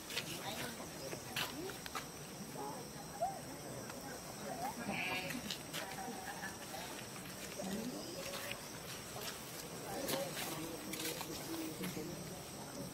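Faint, indistinct voices mixed with short scattered calls, including one brief higher squeak about five seconds in, and frequent light clicks.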